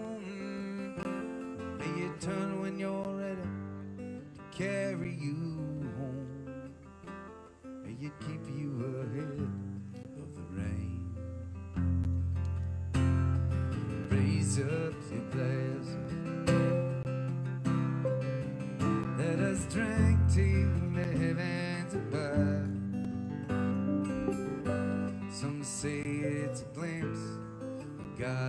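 Live folk-rock band music: strummed acoustic guitar with a fiddle playing over it. The low end fills out and the music gets louder about twelve seconds in.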